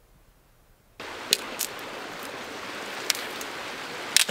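Near silence for about a second, then the steady rushing of a creek cuts in. A few sharp snaps of dry branches being handled sound over it.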